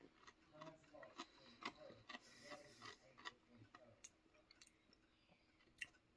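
Faint chewing of crispy fish sticks: soft, irregular mouth clicks and smacks, scattered through the quiet, one a little louder near the end.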